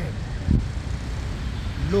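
Steady low rumble of road traffic on a city street, with a short low bump about half a second in.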